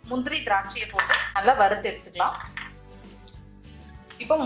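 Cashew nuts and raisins dropped into an empty stainless steel kadai, clattering against the metal, over background music with a voice.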